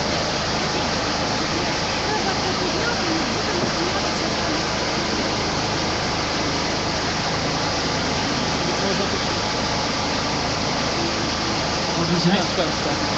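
Steady, loud noise with indistinct voices murmuring underneath and no clear words.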